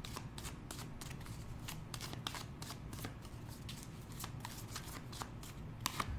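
Tarot deck shuffled by hand: a faint, quick run of card flicks, several a second.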